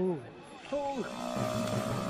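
Two short vocal calls, each swooping up and then falling in pitch. About halfway through, background music with long held notes comes in.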